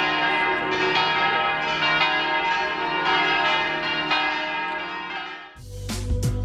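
Church bells ringing: several bells struck again and again, their tones ringing on and overlapping. Near the end they break off and upbeat guitar music starts.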